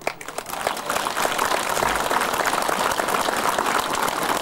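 Crowd applauding: many hands clapping together, building up over the first second and then holding steady.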